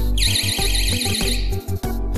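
Magnetic door-open alarm sounding a shrill, rapidly warbling siren, which cuts off about a second and a half in as its magnet is set back against the alarm body. Background music with a steady beat plays underneath.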